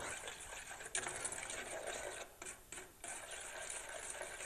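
A spoon stirring butter, sugar and water in a metal saucepan over the heat, with a faint crackling sizzle as the butter melts without yet boiling. The stirring drops away briefly a little past halfway.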